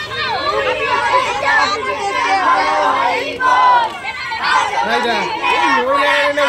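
Several children's voices shouting and chattering excitedly at once, high-pitched and overlapping.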